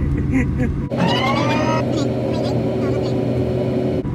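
Car driving, heard from inside the cabin: steady road and engine rumble. About a second in, a rising whine lasts under a second.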